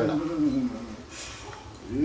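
A man's wordless vocal sounds: a drawn-out falling tone in the first half second, then another held tone starting near the end.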